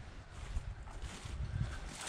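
Faint footsteps over a low, steady rumble.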